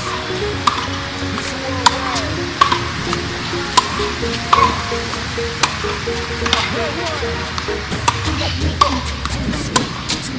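Tennis balls being struck by rackets and bouncing on a hard court during a rally: a sharp pop about every second, unevenly spaced. A hip-hop track with held synth tones plays underneath.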